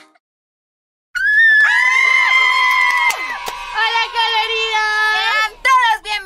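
After about a second of silence, two women let out a long, high-pitched excited scream held for about two seconds, then a run of wavering whoops.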